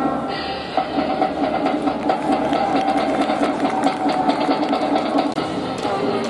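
Cheering music in the stands: brass instruments playing fast repeated notes over a quick, regular drumbeat, starting sharply just under a second in.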